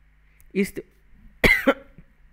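A man's brief vocal sound, then a single cough about a second and a half in.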